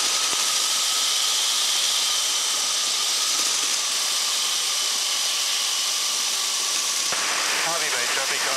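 Flexwing microlight trike's engine and propeller running steadily in flight, with a constant rush of wind over the microphone and a few steady whining tones.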